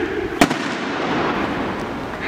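A single sharp firecracker bang about half a second in, over the noise of a large crowd of football fans chanting and shouting.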